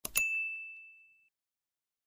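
A mouse-click sound followed at once by a single bright bell ding that rings out and fades over about a second: the notification-bell sound effect of a YouTube subscribe-button animation.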